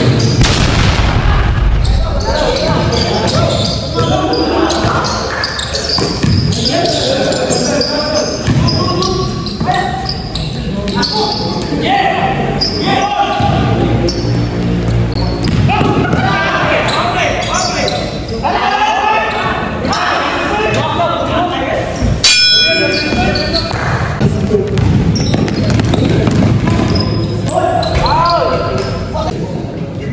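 Basketball being dribbled and bounced on a gym floor amid players' shouts and chatter, echoing in a large indoor hall. About two-thirds of the way through, one sharp knock with a brief ringing.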